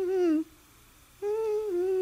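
A voice humming a slow melody: one held phrase ends about half a second in and a second begins just past a second in, each sliding a step lower in pitch, with a short silence between.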